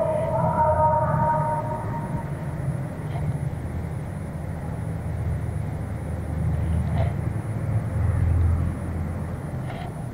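A steady low rumble that swells briefly near the end, with a few faint clicks.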